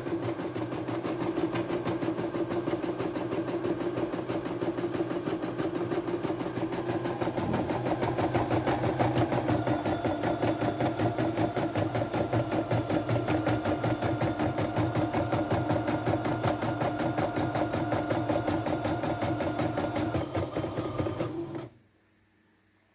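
CNY E960 computerized embroidery machine stitching a design in a rapid, even rhythm. It stops abruptly near the end: the automatic pause at the end of a colour block, signalling that the upper thread colour must be changed.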